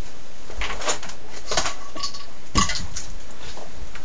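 A few scattered knocks and rustles of someone moving about and handling things while fetching an item out of sight, the loudest about two and a half seconds in, over a steady hiss.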